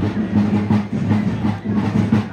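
Military drums of a marching column beating a steady march rhythm, with a low pitched band sound under the beat.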